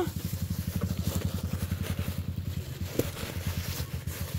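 A small engine running steadily nearby with a fast, even putter, and a single short click about three seconds in.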